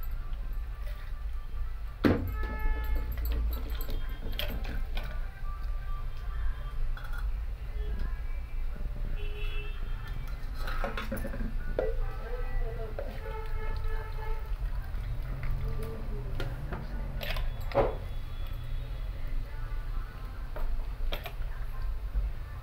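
Faint background music and voices over a steady low rumble, with a few sharp clinks of steel kitchen utensils.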